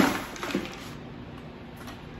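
An old food processor's motor cuts out right at the start and its noise dies away. About half a second in there is a single light knock, then only low room sound. The owner thinks the machine has a short or is just very old, so it runs only while pushed in.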